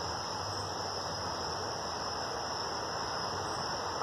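Steady high-pitched chorus of night crickets over a faint even hiss.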